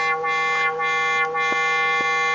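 A square-wave oscillator tone passed through a four-pole vactrol-controlled lowpass filter. It is a low, buzzy note held steady at one pitch and one level, its cutoff left unchanged.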